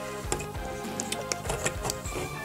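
Several small plastic clicks as a transforming robot toy figure is handled and its arm pops off its ball joint, over steady background music.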